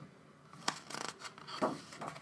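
Pages of an album photobook being turned by hand: a sharp paper flick about two thirds of a second in, then a rustle and a louder page swish near the end.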